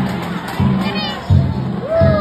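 Danjiri float's festival music: a drum beat repeating about every two-thirds of a second. A crowd shouts and cheers over it.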